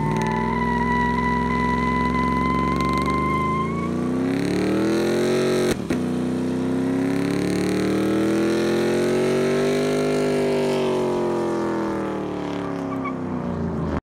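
Chevrolet Silverado pickup doing a burnout: the engine is held at high revs, climbing for about five seconds, dropping briefly near six seconds, then climbing again and easing off. A steady high squeal runs over the first four seconds.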